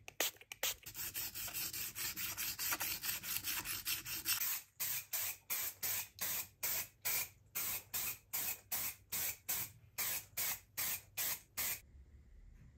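Aerosol spray can hissing as blue paint is sprayed onto a metal crank handle. One long spray gives way about halfway through to a quick run of short puffs, roughly two to three a second.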